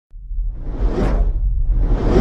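Whoosh sound effect: a noisy sweep that swells to a peak about a second in over a deep rumble, with a second sweep building near the end.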